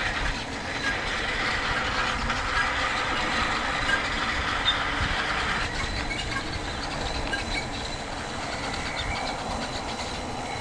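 Mountain bike rolling along an asphalt path: steady rolling noise from the knobby tyres and the bike, which eases a little about six seconds in as the surface changes.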